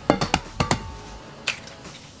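An egg tapped against the rim of a stainless-steel honeycomb frying pan and cracked open: a quick run of sharp clicks in the first second, then a single click about halfway through.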